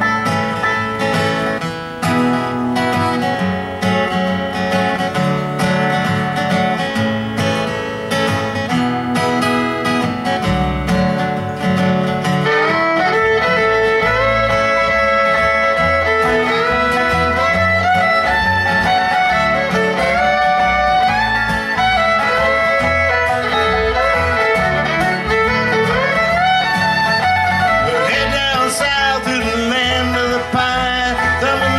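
A live acoustic bluegrass band plays an instrumental opening, with banjo, acoustic guitar, bass and fiddle. The bass fills in the low end about ten seconds in, and the fiddle then plays sliding melody lines over the strummed and picked strings.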